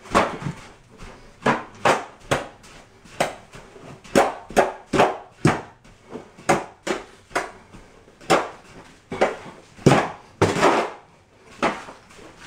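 A long-handled hoe pushed and pulled through sand-and-cement mud in a plastic mud tub: gritty scraping strokes that knock against the tub, about two a second at an uneven pace.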